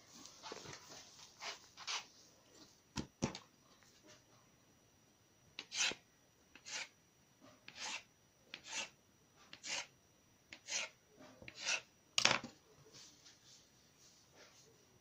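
Soft rubbing of dough rolled by hand on a wooden board, then a knife cutting a dough log into pieces: a short knock of the blade on the board with each cut, about one a second, about seven in all.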